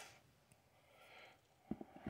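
Near silence, then a quick cluster of a few faint clicks near the end as a small micro red dot sight is handled.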